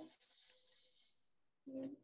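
Near silence on a video-call line: a faint tail of a voice fades out in the first second, and a brief hummed voice sound comes near the end.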